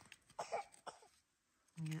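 Faint scrapes of a hand trowel digging into rocky, gravelly soil: a few short scrapes in the first second, then a brief pause.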